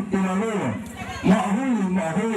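A man's voice reciting in long, drawn-out, sing-song tones, phrase after phrase.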